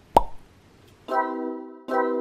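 A short plop sound effect, a click with a quick falling pitch, then a sustained synth chord starts about a second in and is struck again near the end: the opening of the intro music.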